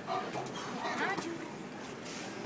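Indistinct background voices of people talking and calling out, with a short rising-and-falling cry about a second in.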